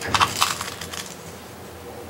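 Plastic spoon scooping coated sand out of a plastic cup: a short gritty scrape with several sharp clicks, over within about a second.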